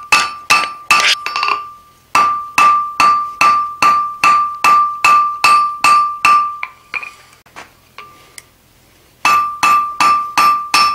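Hand hammer striking hot steel on the anvil, about two and a half blows a second, each blow followed by a high anvil ring: drawing a small bar out square. The blows stop briefly about a second and a half in, go quiet for about two seconds near the seventh second apart from a few light taps, then start again near the end.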